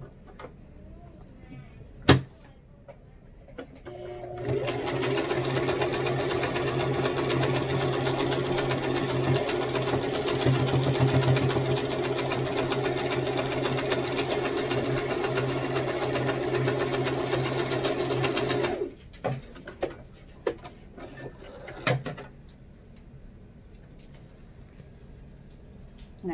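Electric sewing machine stitching a seam through cloth, running steadily for about fourteen seconds from about four seconds in and stopping suddenly. A sharp click comes shortly before it starts, and a few small clicks and knocks follow after it stops.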